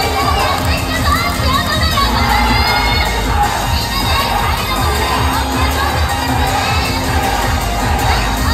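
Audience shouting and cheering over an upbeat pop backing track with a steady bass beat, with a burst of shouts about a second in.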